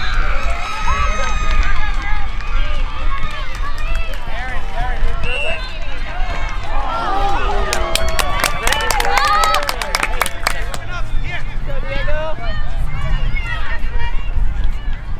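Overlapping voices of sideline spectators and young players calling out, none of it clear speech. A quick run of sharp claps comes about eight to ten seconds in. Wind rumbles on the microphone.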